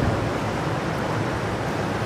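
Steady background noise, an even hiss-like haze with a faint low hum, with no change through the pause.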